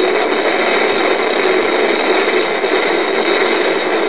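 Steady, loud hiss like static, even throughout, with no words.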